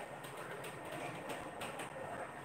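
Whiteboard eraser wiping the board, a series of short, faint rubbing strokes.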